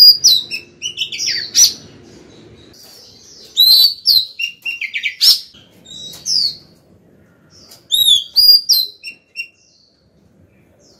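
Female Oriental magpie-robin singing to call a male, in loud bursts of sliding, whistled notes. The song comes in three clusters with short pauses between and falls quiet near the end.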